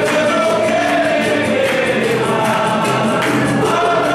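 Congregation singing a hymn together, accompanied by acoustic and electric guitars, over a steady beat of hand clapping.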